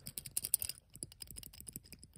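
Soft, irregular clicks and taps from a small die-cast Hot Wheels toy car being handled with the fingers while its plastic bobblehead skull is wobbled.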